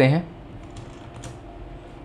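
A few faint, separate clicks from a computer keyboard, heard over a low steady background.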